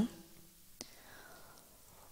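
Near silence, with faint room tone and one faint click just under a second in, in a pause between a woman's spoken phrases; her voice trails off at the very start.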